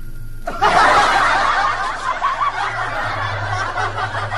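Canned laughter, many people laughing at once, cuts in suddenly about half a second in and carries on, over a low steady hum.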